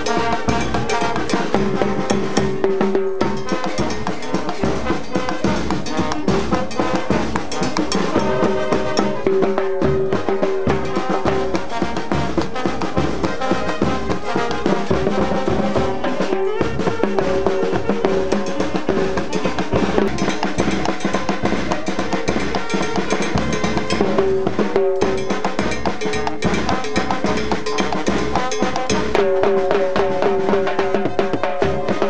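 A banda de pueblo, an Ecuadorian village band, playing dance music: sustained melody notes over steady, continuous drumming.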